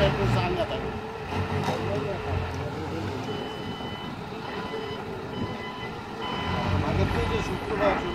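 Forklift reversing alarm beeping over and over from about three seconds in, with the forklift engines running low underneath.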